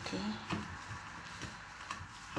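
A spoken "okay", followed by a sharp click about half a second in and two fainter clicks later on, over a faint steady hiss.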